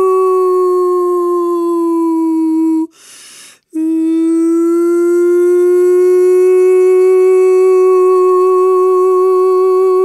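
A woman's wordless vocal tone, the channeled healing sound of a Healing Voice session. It is held on one note that sags slowly, breaks for a short breath about three seconds in, then a second long note rises gently and settles with a light vibrato.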